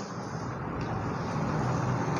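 A steady rumbling background noise with a faint low hum, growing slightly louder, with no distinct knocks or clicks.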